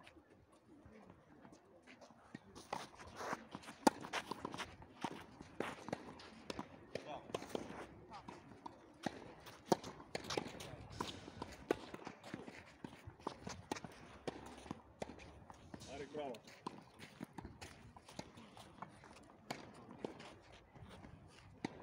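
Doubles tennis on a clay court: sharp, irregular hits of racket on ball and ball bounces, the loudest about four seconds in and another near ten seconds, with shoes scuffing on the clay and players' voices.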